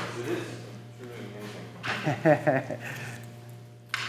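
Indistinct men's speech in two short stretches, over a steady low hum.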